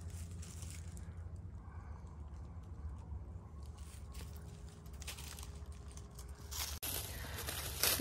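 Footsteps crunching faintly through dry fallen leaves, with scattered crackles over a low steady rumble.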